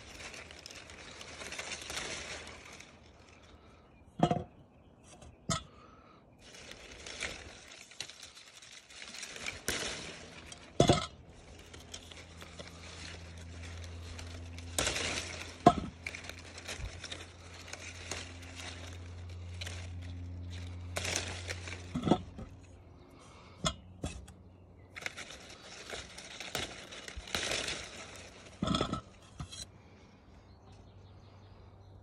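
Rustling of wet loquat leaves and branches being handled, in repeated stretches, with about seven sharp clicks scattered through it. A low steady hum runs through the middle.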